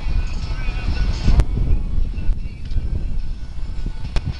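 Uneven low rumble of wind buffeting the camera microphone, with a single sharp click about a second and a half in.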